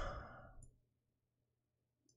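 Near silence: the end of a spoken word trails off in the first half-second, then a faint tick and a low steady hum of room tone.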